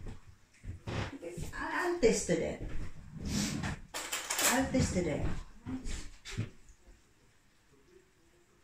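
Indistinct talking that stops about six and a half seconds in.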